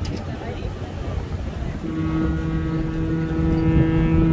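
Ship's horn sounding one long steady blast that starts about two seconds in, over a low rumble on the ferry's open deck.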